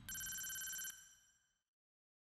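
A single bright electronic chime tone, the sound of a logo sting, held steady for just under a second and then fading away.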